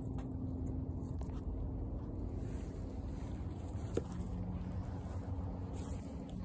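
Goat kids eating grain pellets from a pan, faint crunching and nibbling over a steady low rumble with a faint hum. A single sharper click comes about four seconds in.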